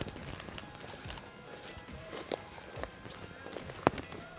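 Soft footsteps and rustling of a person moving stealthily over a forest floor of pine needles and leaf litter, with one sharp click near the end.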